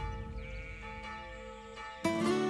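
Church bells ringing: several steady bell tones hang and slowly die away, with another strike coming in about half a second in.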